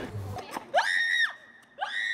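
Two high-pitched startled screams as a costumed scarer jumps out at a tour group. The first rises and falls about halfway through; the second starts near the end.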